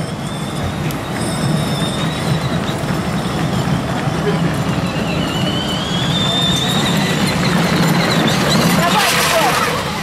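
Steady amusement-park background noise: a low mechanical hum and a faint high whine that slowly dips and rises, under distant voices.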